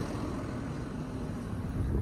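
Tractor diesel engine running steadily close by.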